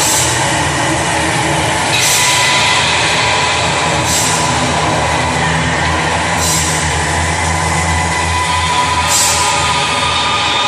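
Two distorted electric guitars making a dense, loud wall of noise with feedback, a few high feedback tones held through it over a low drone. A hissing swell comes and goes about every two seconds.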